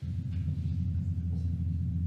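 Ground vibration from a tunnel boring machine's excavation, measured by a velocity sensor in the soil and played back unfiltered as audio over loudspeakers: a steady low rumble that cuts in suddenly.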